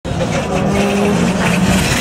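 Rally car engine approaching at speed, unseen at first, holding a steady high note that drops away near the end.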